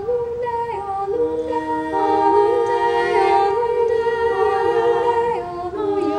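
Women's treble choir singing a cappella in several parts, holding chords whose pitches shift every second or so.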